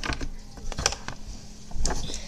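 Small objects being handled: a few light clicks and rustles as crayons are taken out of a container, with a steady low hum underneath.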